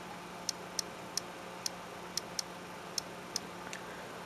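Key clicks of the iPod touch's on-screen keyboard as a word is typed one letter at a time: short, light, high-pitched clicks at an uneven pace of two or three a second.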